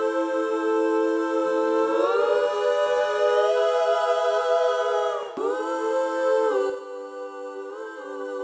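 Background vocal harmonies heard on their own, with no instruments: several voices holding sustained chords. The chord shifts about two seconds in and again near the middle, and the singing gets quieter for the last second or so.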